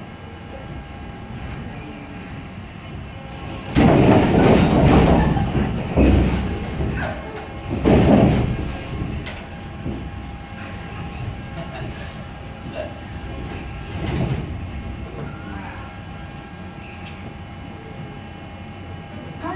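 Earthquake simulator reproducing the 1995 Great Hanshin earthquake (magnitude 7.3, seismic intensity 7): heavy rumbling that comes in surges, the strongest about four seconds in and again around six and eight seconds, with a weaker surge near fourteen seconds.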